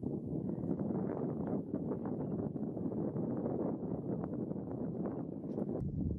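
Wind buffeting the microphone, a gusty, rumbling noise that changes abruptly near the end.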